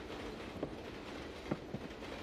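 Steady rumble of a moving passenger train carriage heard from inside, with a few soft, irregular knocks.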